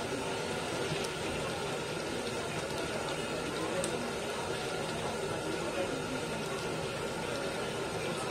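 Battered eggplant slices (beguni) deep-frying in a karahi of hot oil, a steady sizzle with no break.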